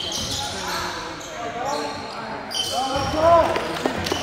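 Basketball dribbled on a hardwood gym floor during play, echoing in a large gymnasium, with short sneaker squeaks on the floor, loudest about three seconds in.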